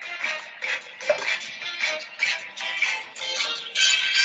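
Mobile phone ringtone playing a familiar melody, a run of pitched notes at an even beat that goes on unanswered.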